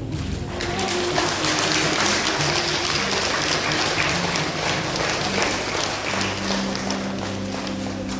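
Audience applauding over background music, the clapping rising sharply about half a second in and thinning out near the end.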